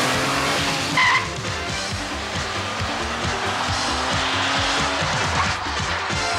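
A sports car pulling away hard, its engine note holding high, with a short tyre squeal about a second in, over music.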